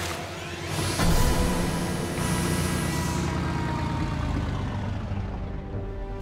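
Dramatic cartoon background music over a low rumble of motor sound effects, with a sudden rush of noise about a second in.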